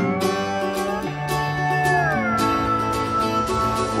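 Acoustic guitar strummed steadily in an instrumental break of a country-folk song, with a held lead note over it that slides down in pitch about halfway through.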